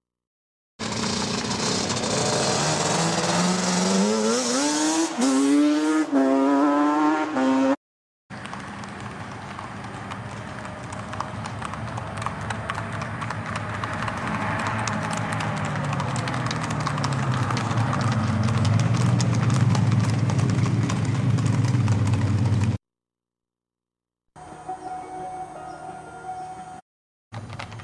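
A vehicle engine rising in pitch as it speeds up, then horses' hooves clip-clopping on a road over a running engine that grows louder. The sound cuts off abruptly several times.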